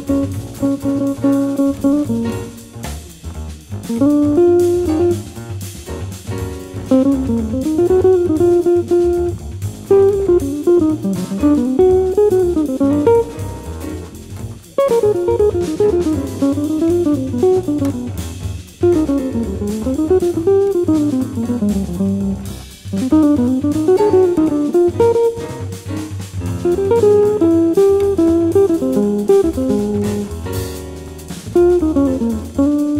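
Small-group jazz: an electric jazz guitar plays fast single-note lines that run up and down, over bass and drum kit.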